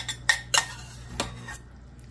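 Slotted spoon knocking against a ceramic bowl as rice is served: two sharp clinks in the first half-second, then a couple of lighter taps a little after a second.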